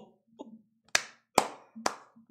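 Three sharp hand claps, about half a second apart.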